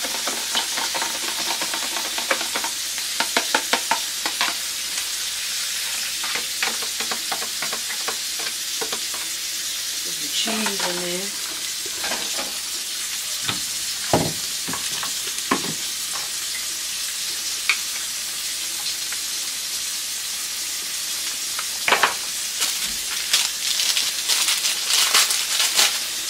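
Butter and beaten eggs sizzling steadily in a hot frying pan. A few seconds in, a fork rattles quickly against a bowl as the eggs are whisked, with scattered knocks of utensils afterwards and a run of crackling and clicking near the end.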